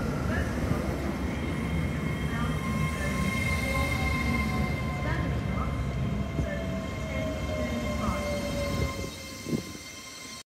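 LNER Azuma multiple unit moving slowly along a station platform: a steady low rumble with a thin whine that slowly falls in pitch. The sound drops away about nine seconds in.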